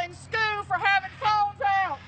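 A woman speaking, with a faint steady low hum underneath.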